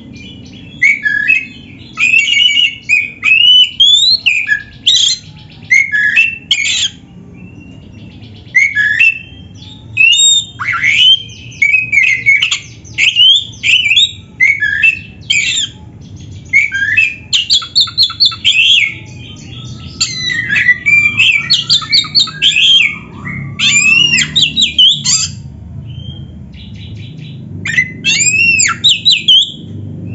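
Oriental magpie-robin (kacer), the all-black Javan form, singing loudly and almost without a break. Its song is a rapid string of varied whistles, rising and falling glides and fast chattering trills, with a few short pauses.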